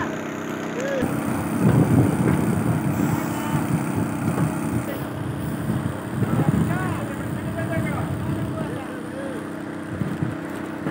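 An engine or machine runs steadily underneath, with men's voices calling out over it now and then.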